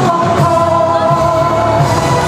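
A woman singing a Cantonese pop song live into a handheld microphone over musical accompaniment, holding a long note.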